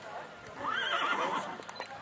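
A horse whinnying once, a wavering, quivering call lasting about a second, starting a little past half a second in.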